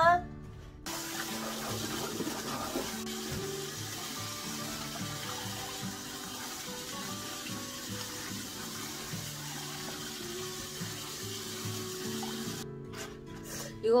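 Tap water running steadily into a stainless-steel sink and splashing over spring-cabbage leaves in a metal bowl as they are rinsed. The flow starts about a second in and stops about a second before the end.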